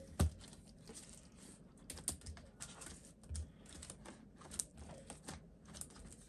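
Clear plastic pocket pages of a ring-binder cash wallet being flipped through by hand: a quiet, irregular scatter of light clicks and rustles.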